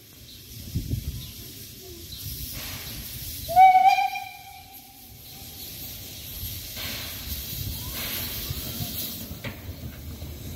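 Narrow-gauge steam locomotive running slowly with steam hissing, sounding one short whistle blast about three and a half seconds in.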